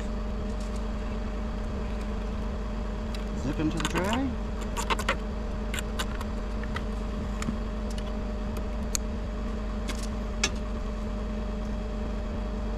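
Bucket truck engine idling steadily with a low hum, while fiber cable and enclosure hardware are handled, giving scattered light clicks and taps. A brief rising tone comes about four seconds in.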